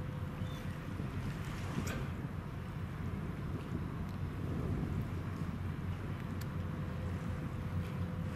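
Steady low drone of a passing feeder container ship's engines across open water, mixed with wind rumbling on the microphone. Two faint clicks, about two seconds in and again past six seconds.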